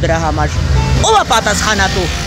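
Speech: a woman talking in Armenian, over a steady low rumble of street traffic.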